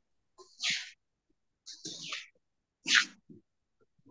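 A person clearing their throat in three short breathy bursts, about half a second, two seconds and three seconds in.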